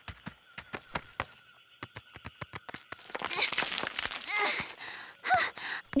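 Cartoon sound effects of a small animated dinosaur scrambling up over rock: a run of quick, irregular clicking footfalls, then louder breathy effort sounds with short vocal grunts as it arrives.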